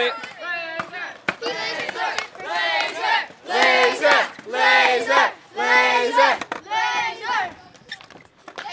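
A group of kids' voices chanting in unison, a long drawn-out shout about once a second, some eight times over.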